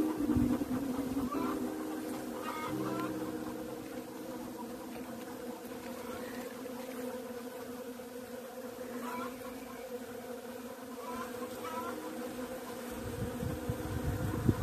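Several honeybees buzzing in flight as they come to collect water: a steady hum of overlapping wingbeat tones, louder in the first few seconds.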